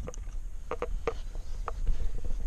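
Handling of a Ford Fiesta Mk7's cabin pollen filter and its plastic housing: a string of about half a dozen light plastic clicks and knocks with some rubbing as the filter is worked out, over a low rumble of handling noise.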